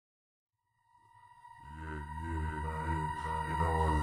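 Instrumental intro of a rap beat fading in from silence: a steady high beeping tone enters first, then deep bass and repeating synth chords join, growing steadily louder.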